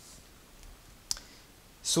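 A single sharp click about a second in, from a computer mouse, against faint room tone.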